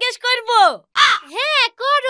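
Lively, high-pitched Bengali dialogue with exaggerated, swooping sing-song pitch. About a second in, a short harsh cry breaks in.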